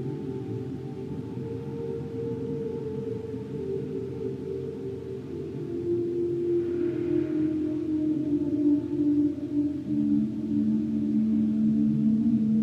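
Slow, drone-like ambient music from a sustained electric guitar: long low notes overlap and shift in pitch, with a new lower note entering about ten seconds in as the sound grows slightly louder.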